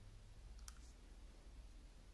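A single faint click of plastic fuse beads being picked up with tweezers, about two-thirds of a second in, over near-silent room tone.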